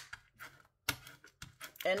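A few light, scattered clicks and taps of a plastic scraper tool being pressed and rubbed over transfer tape on a wooden cutout.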